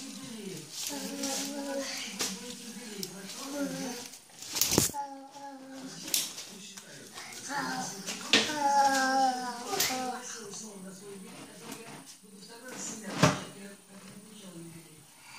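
A small children's umbrella being handled and pushed open, with a few sharp clicks and knocks, the loudest near the end as it opens. Quiet, indistinct talking runs underneath.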